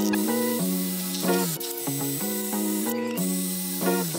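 Makita 40V cordless drill boring into a wood puck cast in clear resin: a hissing, grinding noise that stops briefly twice, under background music with a melody.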